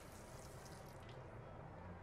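Faint, steady hiss of a tap running into a bathroom sink, with a low hum underneath.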